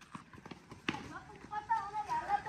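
Sneakers scuffing and slapping on the street as children run, with one sharper knock a little under a second in. Faint, distant children's voices come in near the end.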